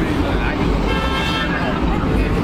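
A car horn toots once, about a second in, holding one steady note for roughly half a second, over traffic rumble and people talking.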